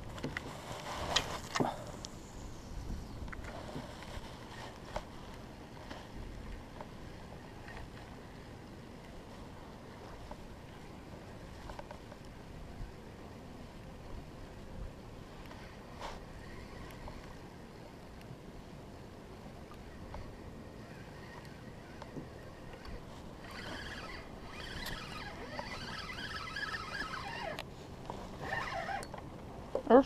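Water lapping quietly against a plastic fishing kayak, with scattered small knocks and clicks of rod and reel handling. Between about 23 and 28 s there is a rattly whirring that fits a spinning reel being cranked to bring in a hooked fish.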